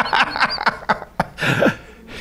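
A man laughing: a run of short laughs that fades away toward the end, with a breathy exhale near the end.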